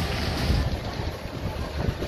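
Steady background wash of a crowded food-market tent, with low rumble from wind and handling on the phone's microphone.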